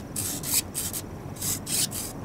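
Close rustling and rubbing near the microphone: a string of short hissy scrapes, two or three a second, over a low wind rumble.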